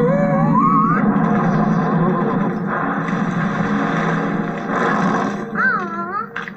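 Animated film soundtrack: a brief laugh sliding up in pitch at the start, then busy music. A short wavering vocal sound comes near the end.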